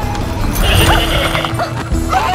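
Light orchestral film score with an animal call over it, about a second long, starting just over half a second in, as an animal cart passes.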